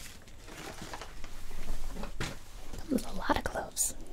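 Soft whispered voice close to the microphone, broken by a sharp click about two seconds in and a short hiss near the end.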